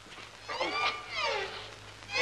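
Two meow-like cries, each drawn out and falling in pitch, the second a little longer.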